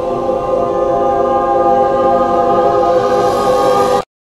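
Choral film score: voices holding a sustained chord that swells slightly, then cuts off abruptly at the end.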